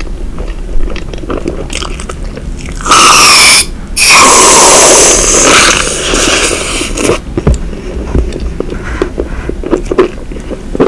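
Reddi-wip aerosol whipped cream can spraying into the mouth in two spurts: a short hiss about three seconds in, then a longer one just after that fades out. Wet mouth and eating clicks follow.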